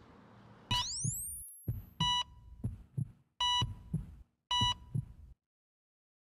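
Outro sound effects for an animated end card: a rising electronic whoosh, then three short bright chime-like tones over paired low thumps like a heartbeat, stopping abruptly into silence near the end.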